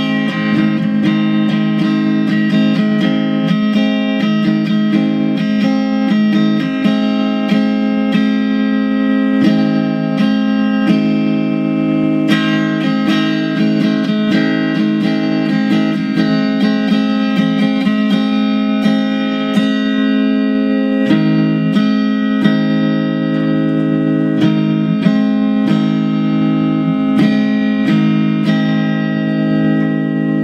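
Fender electric guitar playing a country tune: picked chords ringing continuously, changing every second or two.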